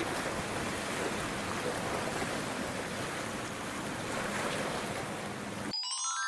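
Small waves washing and breaking against shoreline rocks in a steady noisy wash. Near the end it cuts off abruptly and a chiming jingle climbs up in quick notes.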